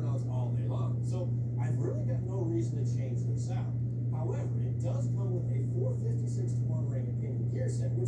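Indistinct speech from a television show playing in the background, over a steady low hum.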